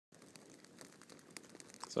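Faint rustling with scattered small crackles and clicks, low and irregular.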